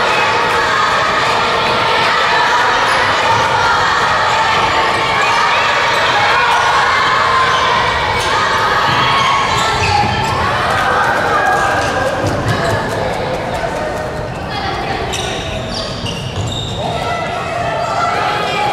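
Handball game sound: the ball bouncing on the wooden court floor amid shouting from players and courtside supporters.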